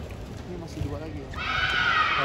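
Badminton shoe squealing on the court mat as a player changes direction in a rally: a loud, high squeal starting about halfway through and lasting about a second.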